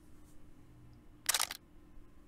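A camera shutter clicking once, a short sharp clatter about a second and a quarter in, over a faint steady room hum.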